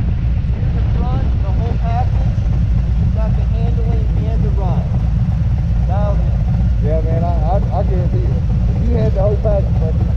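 Harley-Davidson touring motorcycle engines idling at a standstill with a steady low rumble.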